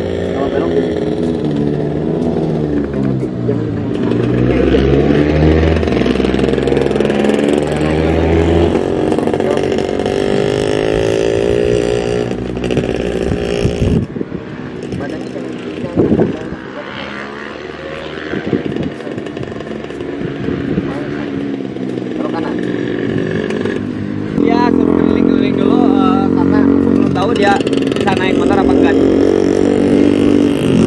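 A motorcycle engine running, its pitch rising and falling as it is revved, with a voice over it. The engine settles to a steadier note for the last few seconds.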